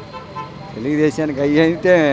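A man speaking briefly into a reporter's microphone, over faint street background noise.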